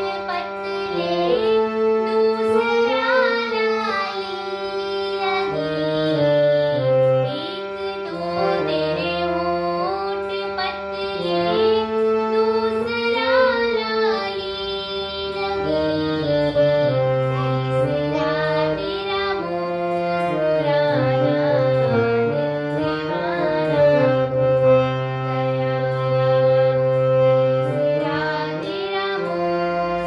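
Two girls singing a Hindi devotional song (bhajan) to a harmonium, the harmonium's reeds holding sustained chords under the gliding sung melody.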